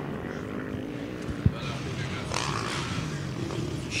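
Motocross dirt bike engines revving and changing pitch as the bikes ride the track, with one sharp thump about a second and a half in.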